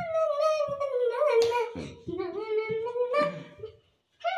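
A child singing a slow melody in long drawn-out notes that slide gradually downward, then climb again near the end.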